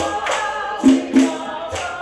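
Live music: voices singing together over hand percussion, with sharp rhythmic strikes a few times a second from claps and shaken percussion.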